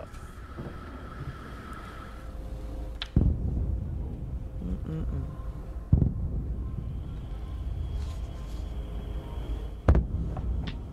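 Distant explosions in Kyiv, heard in a field news recording: three sudden booms about three seconds apart, each followed by a low rumble. An air raid siren's steady tone is heard early on and dies away about two seconds in.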